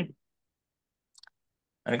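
Dead silence between stretches of speech, broken about a second in by a brief, faint cluster of two or three clicks.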